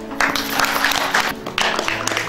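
Audience applauding over background music; the clapping starts abruptly just after the start and dips briefly about a second and a half in.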